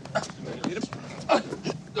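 A man choking at the start of a fit: several short, strained grunts and gasps with breaks between them.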